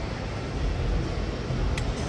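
Steady fairground midway background noise: a low rumble and even hiss, with no single voice or tune standing out.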